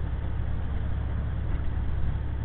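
Cab interior of a diesel semi truck cruising at highway speed: a steady low drone of engine and road noise.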